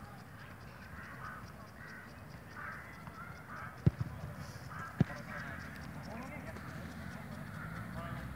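Two sharp thuds of a football being kicked, about a second apart, over the sound of a group of players talking.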